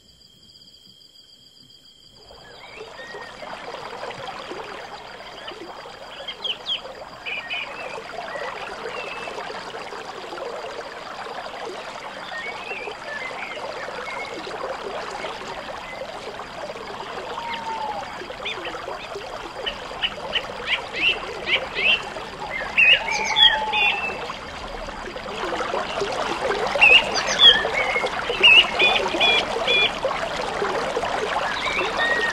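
Water trickling and running steadily, beginning about two seconds in, with scattered chirping calls over it and quick runs of chirps that get louder near the end. For the first two seconds only faint, steady high tones are heard.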